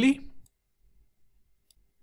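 A spoken word trailing off, then near silence broken by a faint click of a computer mouse about three-quarters of the way through.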